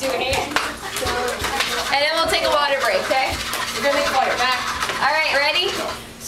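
Indistinct chatter of several people in a small room, with scattered light clacks and knocks through it.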